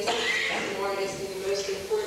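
A woman's voice singing, holding long notes with small changes of pitch, a breathy burst at the start.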